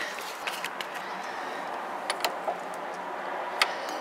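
Several light taps and clicks over a steady background hum, then a sharp metallic click near the end as a thumb presses the latch of a locked door's entry handle, which doesn't open.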